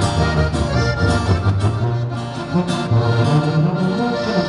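Live norteño band playing an instrumental break: accordion carrying the melody over a sousaphone bass line and strummed acoustic guitar.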